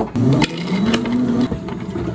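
Hard clear plastic cups clacked down and shuffled on a counter. A drawn-out scraping tone rising in pitch follows for about a second, then ice is tipped into a cup from a plastic scoop near the end.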